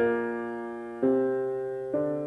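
Jazz piano playing sustained chords in a slow introduction, three chords struck about a second apart, each ringing and fading before the next.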